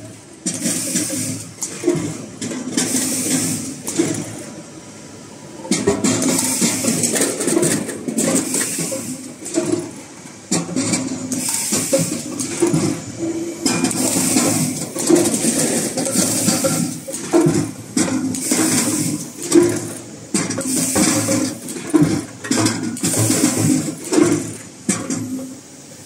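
Fruit and vegetable counting and netting machine running: potatoes rolling and knocking along stainless-steel chutes amid mechanical clatter, with short hissing bursts about once a second. It goes quieter for a moment about four seconds in.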